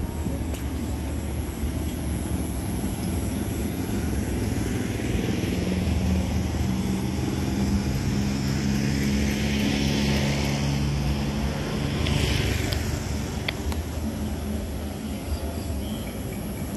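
A steady low engine drone that grows louder through the middle and eases off near the end.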